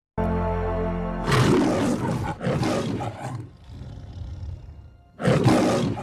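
The Metro-Goldwyn-Mayer logo's lion roar: a held music chord opens it, then the lion roars twice, growls more quietly, and gives a last loud roar near the end.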